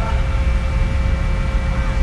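Steady low rumble of a vessel's engine and machinery running, with a faint constant hum over it.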